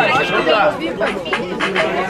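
A crowd of people talking over one another, with several voices at once and no single clear speaker.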